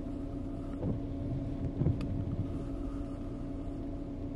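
Vehicle engine idling, heard from inside the cabin as a steady low hum, with a brief slightly louder sound about two seconds in.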